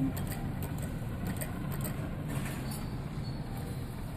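Claw crane machine moving its claw into position, a steady low hum with faint scattered ticks.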